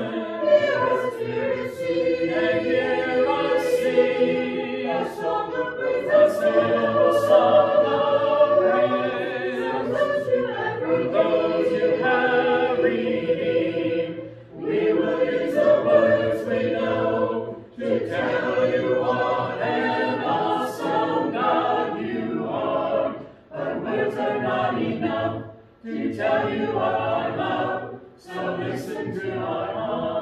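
A church congregation singing a hymn a cappella, led by a song leader, with no instruments. The voices hold long sung notes and pause briefly between lines several times.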